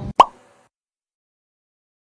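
A single short, loud pop sound effect with a quick upward bend in pitch near the start.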